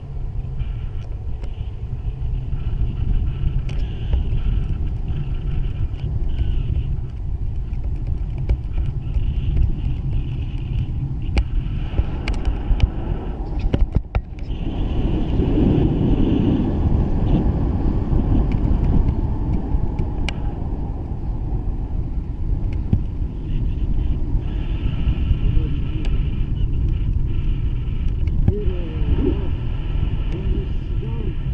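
Wind rushing over the camera's microphone in paraglider flight: a steady low rumble, with a brief break about fourteen seconds in.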